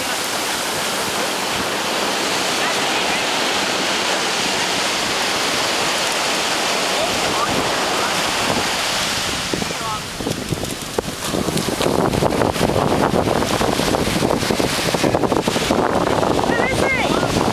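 Ocean surf washing steadily onto a sandy beach. From about eleven seconds in, wind buffeting the microphone makes the sound rougher and a little louder.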